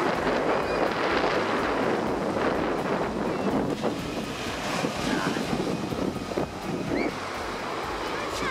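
Surf breaking on a sandy beach, a steady rushing wash, with wind buffeting the microphone.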